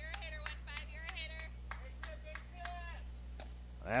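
Faint ballpark crowd heard through the broadcast microphone: hand claps about three times a second and high-pitched voices calling out in short bursts, over a steady low hum.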